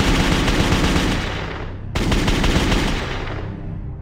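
Rapid automatic gunfire sound effect: a dense burst of shots that cuts off abruptly about two seconds in, then a second burst that fades away into sombre music near the end.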